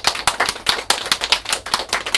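Audience applauding, a quick patter of separate hand claps.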